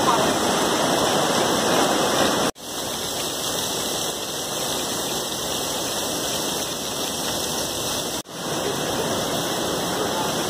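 Heavy storm rainwater rushing and splashing down concrete station stairs and onto flooded floors, a steady rushing. It breaks off abruptly twice, about two and a half seconds and eight seconds in, and is a little quieter after the first break.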